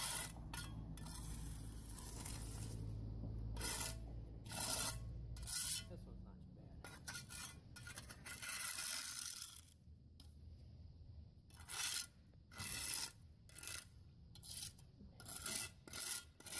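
Steel trowel scraping over a concrete driveway slab in repeated short, irregular strokes, working wet concrete mix into a crack. A low steady hum underlies the first six seconds, then stops.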